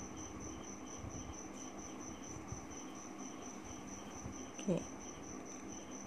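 A cricket chirping steadily in the background: a high-pitched pulsed trill repeating about three or four times a second. Beneath it, faint sounds of a pen writing on paper.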